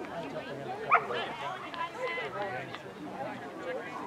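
Overlapping chatter of spectators' voices, with one short, loud, rising call about a second in.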